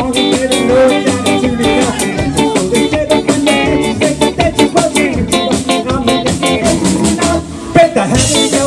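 Live rock band playing: acoustic guitar, bass and drum kit on a steady beat. The music drops out briefly near the end, then the band comes back in on a hit.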